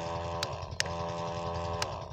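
Electric pump motor of a battery-powered knapsack sprayer running with a steady whine, worked by its switch: a click about half a second in cuts it briefly, another click starts it again, and a last click near the end switches it off.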